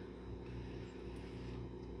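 Steady low machine hum, even in level, with no other sound standing out.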